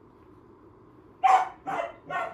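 Puppy giving two short barks a little over a second in, the first louder, while sitting and waiting for a treat.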